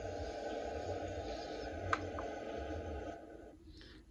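SNOO smart bassinet running on its calm setting: a steady hiss of white noise over a pulsing low rumble, with two light clicks about two seconds in. The sound fades and cuts off a little after three seconds as the bassinet is switched off.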